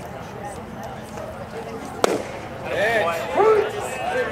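A baseball pitch popping into the catcher's leather mitt with one sharp crack about two seconds in. Players' voices then call out loudly.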